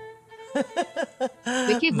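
Background music with steady held notes, and a man's voice coming in over it in short bits, most strongly near the end.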